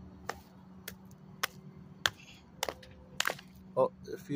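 A claw hammer striking a block of ice again and again, chipping it apart. There are about six sharp blows, evenly spaced a little over half a second apart.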